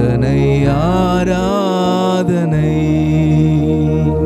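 A man singing a slow, drawn-out worship melody, his pitch rising and falling, over sustained chords from a Yamaha PSR-S975 arranger keyboard. The voice is strongest in the first half, and the held keyboard chords carry on under it.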